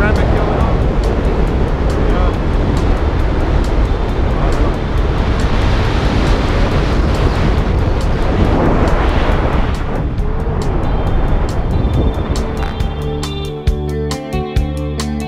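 Wind rushing hard over a camera microphone as a tandem parachute canopy turns, rising a little mid-way through the turn, with a brief voice about nine seconds in. Guitar background music comes in near the end.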